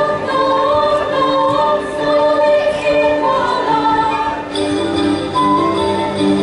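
A group of girls' voices singing a Czech folk song together. About four and a half seconds in, instruments join in.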